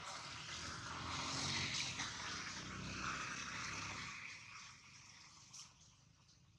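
An engine passing by, off camera: a rumble with a rushing hiss that swells over the first two seconds, holds, then fades away about four to five seconds in.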